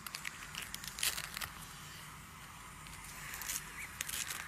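Rustling and crackling from hands working close to a phone's microphone, in short bursts, the loudest about a second in.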